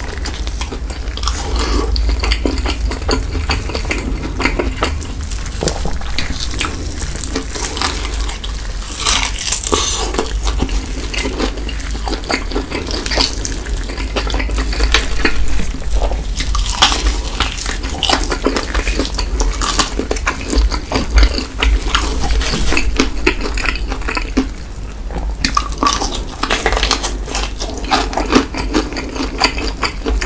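Close-miked eating sounds: Cheetos-crusted fried chicken pulled apart by hand and chewed, with crunching, wet mouth sounds and many irregular crackles and clicks.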